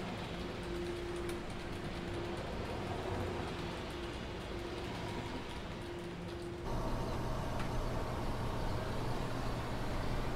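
A steady mechanical drone of ambient background noise with a faint wavering tone. About seven seconds in it cuts sharply to a louder, steady low hum.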